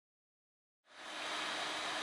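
Complete silence for about the first second, then a steady background hiss of room tone fades in with a faint low hum.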